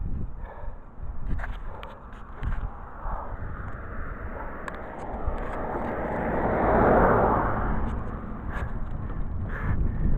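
Wind rumbling on the microphone of a handheld GoPro, with a few handling clicks, and a broad rushing sound that swells to a peak about seven seconds in and fades again.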